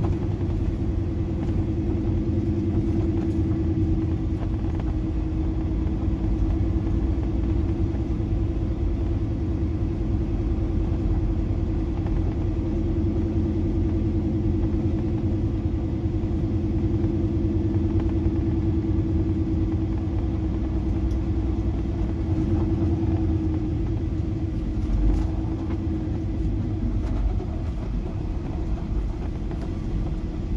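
Heavy truck's diesel engine droning steadily with low road rumble, heard inside the cab while driving. The engine note wavers slightly about three-quarters of the way through.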